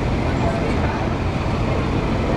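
Steady low rumble of outdoor vehicle and crowd ambience, with faint voices in the background.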